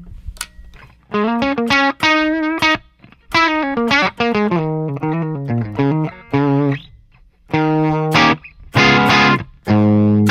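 Electric guitar through a Friedman Buxom Boost pedal into a vintage 1960s Fender blackface Bassman head, playing short chord phrases with brief gaps and a gritty edge. Near the end a louder, fuller chord is struck as the boost starts to push the amp into breakup.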